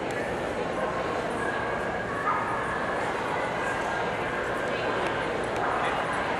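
A dog whining and yipping in thin, high, sliding notes, heard twice: around two seconds in and again near the end, over steady crowd chatter.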